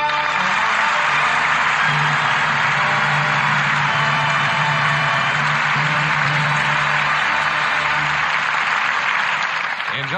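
Studio audience applauding over a sustained orchestral chord, closing the first act of a radio drama. The applause fades near the end.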